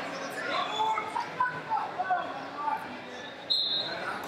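Shouting voices of coaches and spectators around a wrestling mat, echoing in a large hall, with a short high whistle blast near the end.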